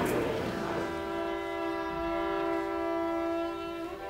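Solo violin playing one long, steady bowed note that enters about a second in and moves to a new note near the end.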